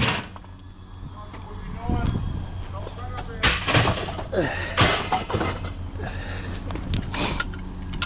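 Metal tubing of a folding frame knocking and clattering as it is handled, with several sharp knocks a few seconds apart, over a steady low hum.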